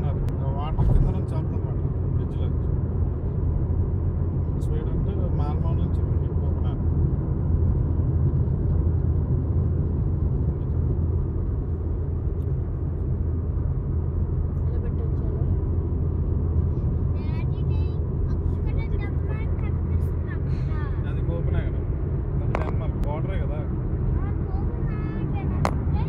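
Steady road and engine rumble heard inside a car's cabin while it cruises at motorway speed, with faint talking at times.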